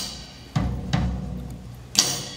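Drum kit played live: a low drum hit about half a second in, another stroke near one second, and a sharper, louder hit with cymbal right at the end. Each hit is left to ring out.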